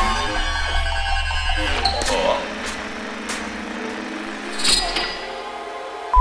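Contemporary chamber ensemble with live electronics playing: a sharp attack at the start over a deep sustained bass, with scattered high struck notes and held tones above it. The deep bass falls away near the end.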